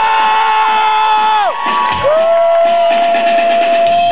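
Live rock-show crowd cheering, with two long held electric-guitar notes over it: the first slides down in pitch about a second and a half in, the second starts about two seconds in and holds steady.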